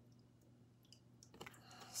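Near silence, then a few faint clicks near the end as a tarot card is handled and laid down on a cloth-covered table.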